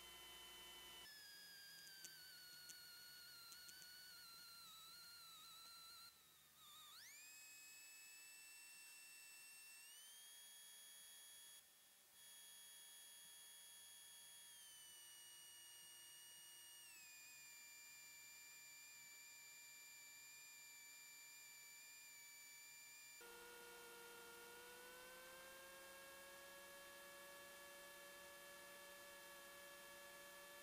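Near silence: only a faint electrical whine in the cockpit audio feed, a few thin tones that waver, glide sharply up about seven seconds in, then step up and later step down in pitch.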